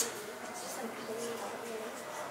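Faint, indistinct voices murmuring in a room, with no distinct clipping sound.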